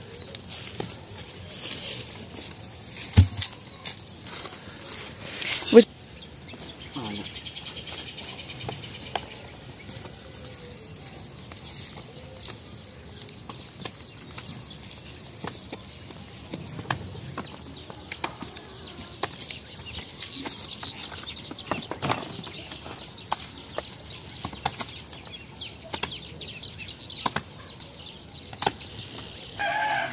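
Hands slapping and patting wet mud onto the outer wall of a brick clamp kiln, with bricks set into place against it: irregular slaps and knocks, the loudest two about three and six seconds in.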